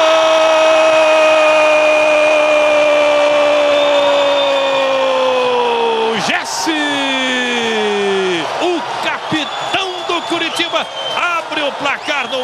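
A Portuguese-language football commentator's long goal cry ('Gooool'), held on one note for about six seconds and sinking at the end, marking a headed goal. A second, shorter falling cry follows, then excited shouted commentary.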